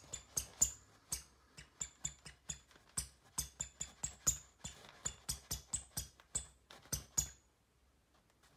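Inflatable plastic toy hammer knocking against a head in a quick run of hollow bonks, about three or four a second, each with a short high ring. The knocks stop shortly before the end.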